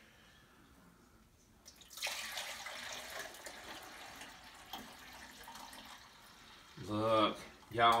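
Kombucha poured from a large glass jar into a part-filled measuring pitcher. The splashing starts sharply about two seconds in, then gradually eases off as the stream thins.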